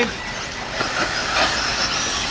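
Electric eighth-scale RC buggies running on a dirt track: a high-pitched whine from their electric motors and drivetrains over a steady rush of tyre and track noise.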